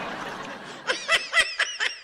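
A person laughing: a breathy, hissing exhale followed by a quick run of short, high-pitched giggles from about a second in.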